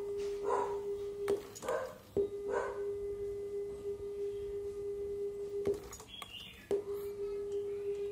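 Steady 400 Hz test tone from a Nakamichi ZX-7 cassette deck during a frequency check. It drops out briefly about a second and two seconds in, then for about a second near six seconds in, with a click at each break.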